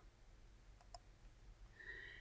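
Near silence with a couple of faint computer mouse clicks about a second in, as an option is picked from a drop-down list.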